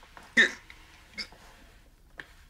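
A man crying: one loud, gasping sob about half a second in, then a smaller, higher whimper a little under a second later.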